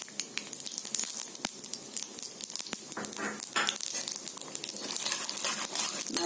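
Split chana dal and urad dal frying in hot oil in an iron wok: a steady sizzle full of small, rapid crackling pops.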